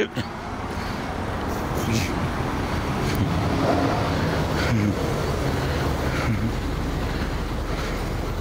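Street traffic noise: a steady low rumble of cars driving along a city road.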